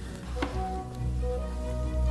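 Background music of sustained held tones over a low bass, with a single short click about half a second in.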